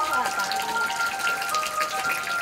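A stream of water from a pipe splashing steadily into a shallow concrete pool, under background music with long held notes.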